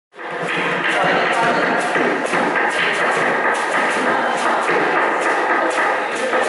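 A plastic bucket, a wooden washboard and a broom being knocked, brushed and scraped by hand, with many quick knocks and scrapes close together.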